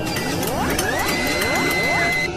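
Mechanical sound effects for an animated logo transition: about four rising whirring sweeps in quick succession, with rapid clicking like a ratchet, and a steady high tone held from about halfway through.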